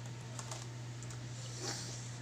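Steady low electrical hum with a few faint clicks.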